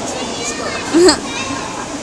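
A child's short, high-pitched burst of laughter about a second in, over a steady background of people chattering.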